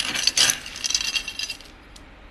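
Metal scoop digging into a bin of dry pet kibble, the pellets rattling and clattering against the scoop and each other, dying down about three-quarters of the way through.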